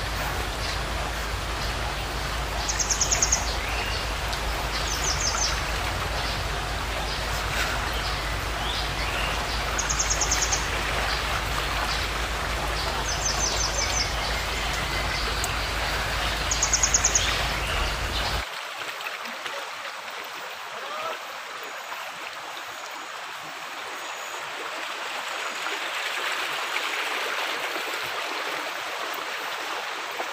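Water rushing steadily along a narrow irrigation channel, with short high trilling chirps every few seconds. About eighteen seconds in, the sound cuts abruptly to a quieter, thinner rush of water.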